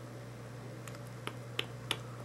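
A person making four short, sharp clicks about a third of a second apart in the second half, over a low steady hum.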